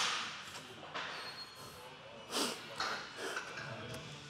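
A man's short, forceful exhales and strained breaths, about five in four seconds, as he works through a heavy set of overhead cable tricep extensions.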